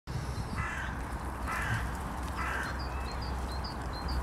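Mallard duckling peeping in short high notes, starting about halfway through, after three harsh, crow-like calls from a larger bird about a second apart, over a steady low rumble.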